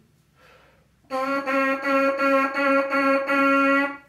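A trumpet mouthpiece buzzed on its own, starting about a second in: a rhythm of short, evenly spaced tongued notes on one pitch, ending in a longer held note.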